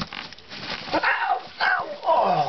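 A man's short pained yelps, twice, falling in pitch: he has just been bitten on the finger by a rat pup.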